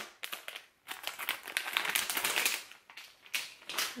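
Plastic pouch crinkling and crackling in irregular bursts as it is pulled open by hand, with a couple of brief pauses.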